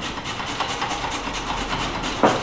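Fast, even scraping strokes of fresh ginger being grated on a very sharp hand grater.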